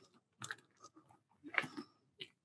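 Faint, irregular crunching footsteps on a rough gravel path, a few scattered steps with short quiet gaps between them.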